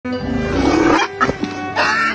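An elephant's low roaring call over background music, with a short loud burst of sound near the end.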